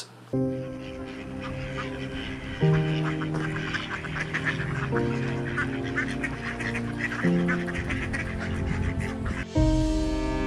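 Mallard ducks quacking repeatedly over background music, whose held chords change about every two and a half seconds.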